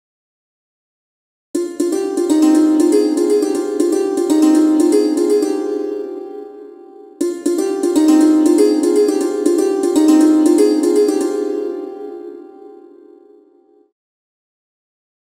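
Sampled santoor and hammered dulcimer from the RDGAudio Santoor and Dulcimer 2 plugin, playing an arpeggiated factory preset. It is a fast run of struck metal strings that starts about a second and a half in and rings away. The same phrase then plays once more and fades out near the end.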